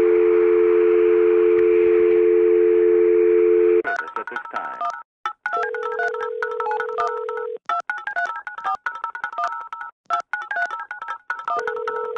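Telephone dial tone, two steady tones held together for about four seconds, that cuts off suddenly. Then a fast, rhythmic piece of music built from telephone keypad (DTMF) dialing tones, with a held lower tone coming in twice.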